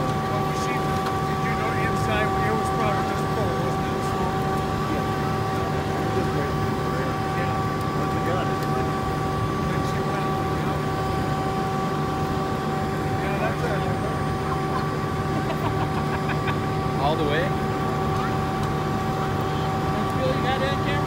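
A vehicle horn, plausibly the burning school bus's own, sounding continuously in one unchanging tone, with faint crackling and distant voices under it.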